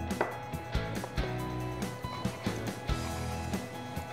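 Background music with a handful of separate knife strikes on a wooden cutting board as bacon is diced.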